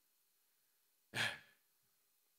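A man's short, breathy sigh, like a half-voiced "eh", about a second in, otherwise near silence.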